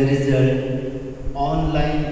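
A man's voice speaking slowly, drawing out long steady vowels so that it sounds almost like chanting: one long held sound through the first second, then a shorter, higher-pitched one near the end.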